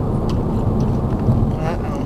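Steady low rumble of a car heard from inside the cabin, with no sudden events standing out.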